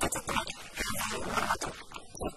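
Speech only: a person talking in Arabic in a TV studio.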